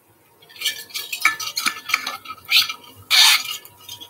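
Close handling noise: a run of clinks, taps and rustles, with a louder scraping rustle about three seconds in.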